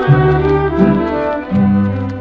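Ranchera band playing a short instrumental passage between sung lines, steady high string tones over bass notes that change about three times.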